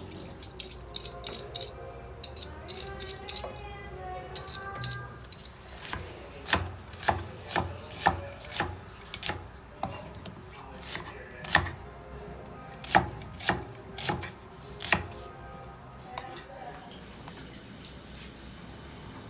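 Knife chopping on a wooden cutting board: quick light taps in the first few seconds, then heavier chops about two a second from about six seconds in.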